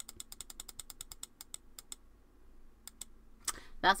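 A rapid run of small clicks, several a second, from computer controls being worked to zoom out a webcam view. The clicks stop about two seconds in, and two more follow about a second later.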